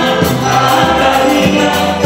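Gospel music: a choir singing over a moving bass line and a steady beat with light percussion.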